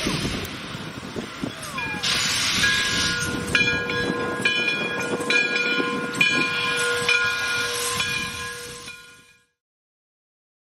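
Steam-train sound effects for a logo intro: hissing steam and a steady whistle, with a chiming tone struck again about once a second, all fading out near the end.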